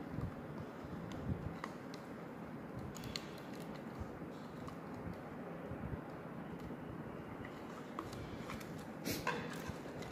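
Faint handling sounds of enamelled copper wire being wound onto a motor stator with plastic end plates: light scratching and a few small clicks over steady room noise, with a small cluster of clicks near the end.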